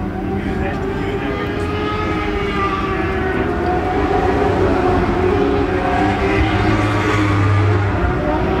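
A pack of Lightning Sprint mini sprint cars racing on a dirt oval: several small, high-revving motorcycle-type engines running at once, their pitches rising and falling as they go through the turns.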